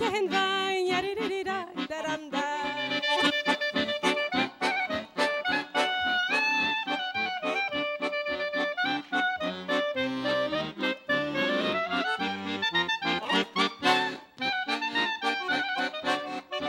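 Clarinet and accordion playing an instrumental Yiddish dance tune, the clarinet carrying a bending melody over the accordion's steady, pulsing accompaniment.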